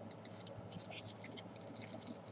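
Faint crinkling and rustling of a small sheet of origami paper handled between the fingertips as a point is pushed in for an inside reverse fold, heard as a scatter of light, irregular ticks.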